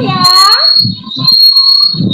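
A woman's voice heard through a video call, a drawn-out questioning "ya?" with a rising and falling pitch, then a short murmur. A steady high-pitched whistle-like tone runs under the voice and drops out in its pauses.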